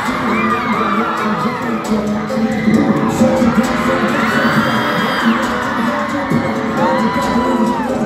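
A K-pop song playing loud over a concert sound system, with the audience cheering.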